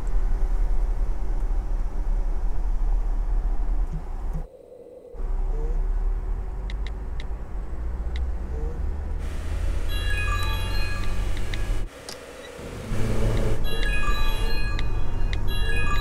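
Steady low road rumble inside a moving car, broken off briefly twice. About ten seconds in, light chiming music joins it.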